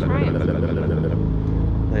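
Low, steady rumble of a road vehicle's engine running on the street, with a short bit of speech just after the start and again at the end.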